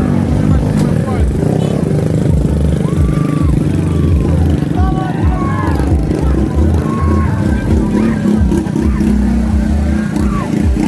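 Motorcycle and vehicle engines running in a slow convoy, under a crowd's scattered shouts and calls.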